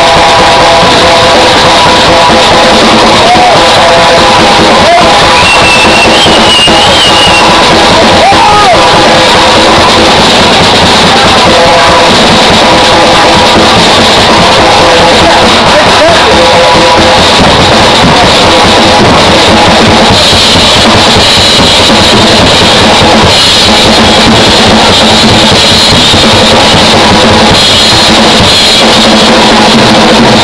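A rock band playing live, a drum kit driving the beat under electric guitar and keyboard, loud and steady throughout.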